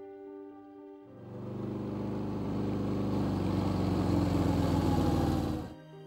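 Film soundtrack: a few soft held notes, then a loud low droning swell that builds for several seconds and cuts off suddenly near the end.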